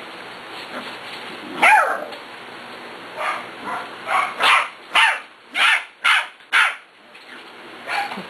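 Pembroke Welsh Corgi puppy barking in high yaps: one falling yelp a little before two seconds in, then a run of about eight short barks roughly half a second apart, loudest in the second half.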